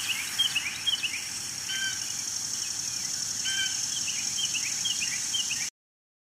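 Birds calling outdoors: runs of short, quick descending chirps, with two lower, fuller calls about two and three and a half seconds in, over a steady high-pitched hiss. The recording cuts off abruptly near the end.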